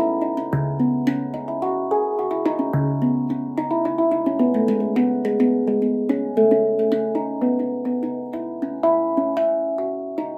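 Stainless-steel MASH handpan in C# Annaziska 9 played with the hands: a flowing, fairly quick run of struck notes that ring on and overlap, with light finger taps between them. The deep central ding note (C#) is struck twice, about half a second in and near three seconds.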